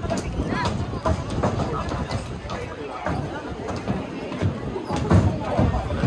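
People talking in a crowd, several voices overlapping in unclear chatter, with small scattered knocks among them.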